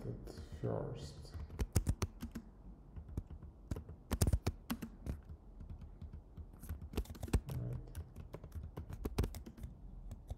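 Typing on a computer keyboard: irregular keystrokes, with a quick flurry of presses about four seconds in.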